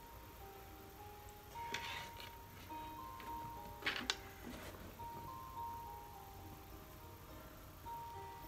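A baby bassinet's built-in little music playing faintly: a simple electronic tune of single held notes stepping up and down. Baby clothes rustle briefly twice, about two and four seconds in.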